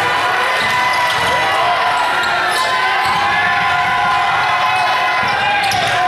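A basketball being dribbled on a gym floor, over the steady murmur of a crowd of spectators' voices.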